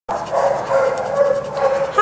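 A dog giving one long, steady, pitched vocal call that is held for nearly two seconds.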